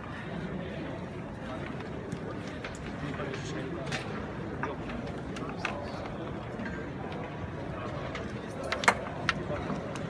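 Background chatter of a crowded hall, with scattered sharp clicks of flick-to-kick table-football figures striking the ball on the cloth pitch; the loudest clicks come near the end.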